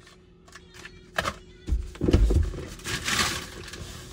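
A passenger getting out of a car's front seat: a sharp click about a second in, then heavy thumps and rustling, with a hiss near the end.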